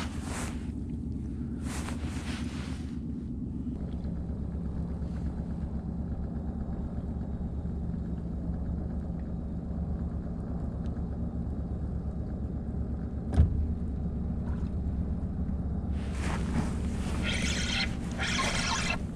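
A boat's outboard motor running steadily at trolling speed, a low, even hum. There is a single sharp tap about thirteen seconds in and some brighter rustling noise near the end.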